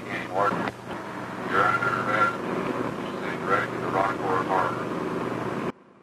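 An unintelligible voice calling out over the steady drone of a boat engine, from an old film soundtrack. The sound cuts off abruptly near the end.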